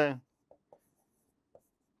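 A pen writing on a board, heard as three faint, short taps of the pen tip while letters are written, after the tail of a spoken word.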